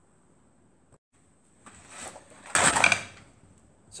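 Metal engine parts being handled on the bench: a cast-iron cylinder barrel being set onto an aluminium crankcase half to check port alignment, a scraping rattle that builds from about the middle and peaks in a short clatter before dying away.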